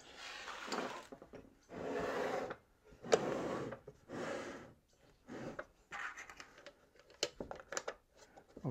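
A wooden box rubbing and scraping on a wooden workbench in a series of short strokes as it is handled and turned, with a couple of sharp clicks from its metal fittings.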